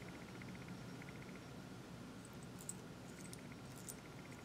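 Quiet room tone with a few faint, brief clicks in the second half.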